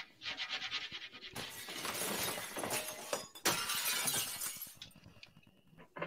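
Window glass being smashed: two long crashes of shattering glass, the first about a second and a half in and the second about three and a half seconds in, after a short rattle.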